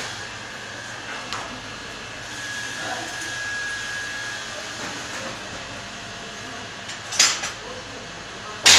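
Steady workshop-hall background noise, with one sharp metallic clank about seven seconds in.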